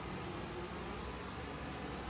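Steady background hiss with a low hum underneath, with no distinct events.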